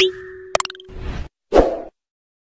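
Animated subscribe-button sound effects: a loud rising pop-whoosh at the start, a few quick clicks about half a second in, and a second swoosh near the end.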